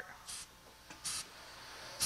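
Pneumatic vertical lift cylinder venting air as the lift arm is lowered: two short, faint, high hisses about a second apart.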